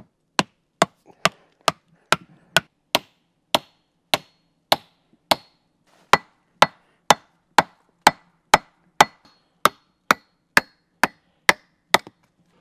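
Steady hammer blows, about two a second, driving a wooden stick through a homemade peg-making jig to form a round wooden peg; some blows leave a short high ring.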